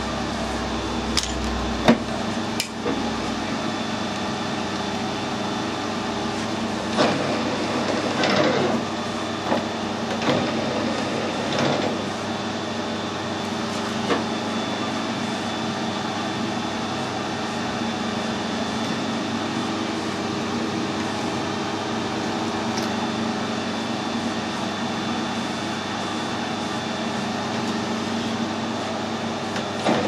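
A steady machine hum from the metal lathe, with scattered sharp metal clicks and clunks in the first twelve seconds or so as a tailstock die holder is set up against a brass rod for threading.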